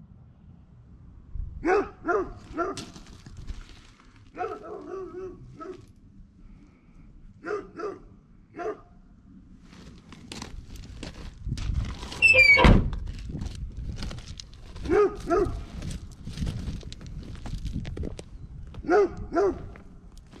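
A dog barking in short groups of two or three barks, several times over. About twelve seconds in, a creak rising in pitch ends in one heavy thunk.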